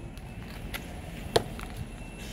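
Two short sharp clicks, the second and louder one about two-thirds of the way through, over a steady low background hum.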